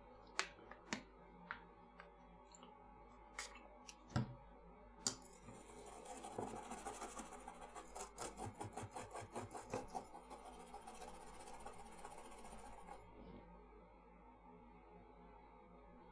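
Toothbrush scrubbing a circuit board to clear away stray solder balls: faint, quick repeated brushing strokes from about six seconds in until about thirteen, after a few scattered clicks and knocks.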